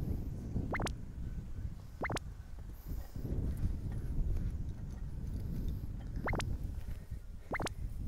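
Wind rumbling on the microphone, with four short sharp taps in two pairs about a second and a half apart.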